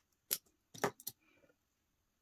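A few sharp clicks and taps as makeup items are handled, a makeup brush against a hard eyeshadow palette, all within the first second or so.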